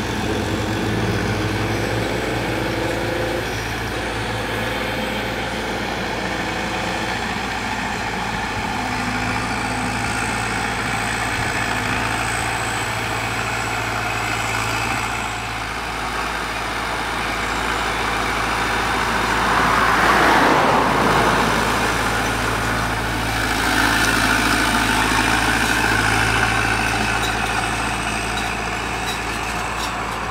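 Self-propelled crop sprayer's diesel engine running steadily at a distance as it drives across the field spraying. A louder broad rushing swell lasts about two seconds roughly two-thirds of the way through.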